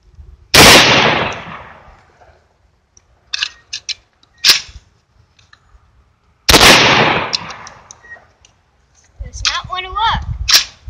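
Two shots from a Catamount Fury II magazine-fed semi-automatic 12-gauge shotgun, about six seconds apart, each ringing off in a long echo. Between them come a few short, sharp clicks.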